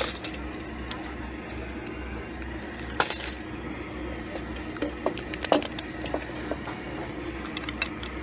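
Cooked lobster shell being cracked and pulled apart by hand: sharp clicks and snaps, with one loud crack about three seconds in and a run of clicks a couple of seconds later.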